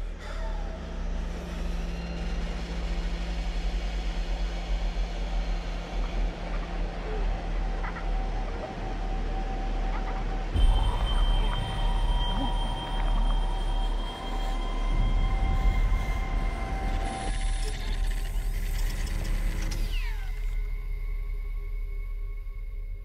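Dark cinematic drone soundtrack: a deep, constant rumble under long held tones, with a sharp hit about ten and a half seconds in and a shift in texture near seventeen seconds.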